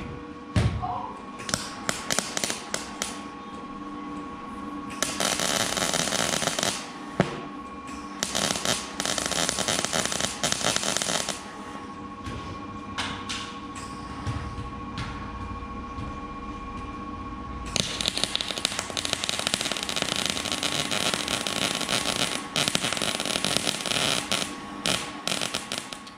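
Arc welding on steel cross braces, crackling in bursts: a weld of about two seconds, another of about three, then a longer one of about eight seconds near the end, with a few sharp clicks in the pauses.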